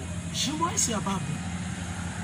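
A man's voice speaking briefly, from about half a second in, over a low, steady background hum.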